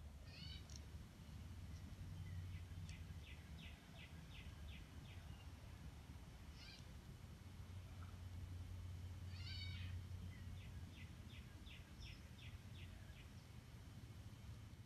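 Faint bird song, plausibly tufted titmice: two runs of about eight quick whistled notes, about three a second. Between them come a few short sweeping calls, over a low steady hum.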